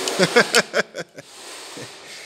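A man's voice: a few quick, unclear syllables in the first second, over a steady hiss.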